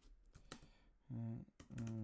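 Typing on a computer keyboard: a quick run of faint key clicks, mostly in the first second.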